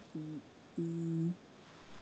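A person's voice making two short closed-mouth hums ("mm"), the second longer and held at a steady pitch.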